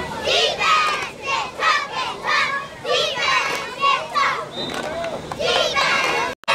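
Sideline crowd and young players shouting and cheering during a youth football play, many high-pitched voices yelling over one another.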